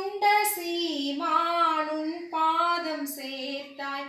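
A woman singing a Tamil hymn to Mary solo and without accompaniment, in held notes with short breaks between phrases.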